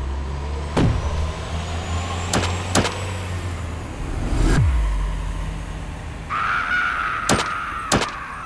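Action sound effects on a stop-motion film soundtrack: a low, steady rumble under a series of sharp cracks, with quick falling zaps at about one second and four and a half seconds in as a blast throws smoke across the set. About six seconds in a steady high whine starts and runs on under two more sharp cracks.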